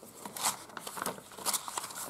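Paper pages of a handmade junk journal rustling and crinkling as they are lifted and turned by hand, in irregular bursts, the sharpest about half a second and a second and a half in.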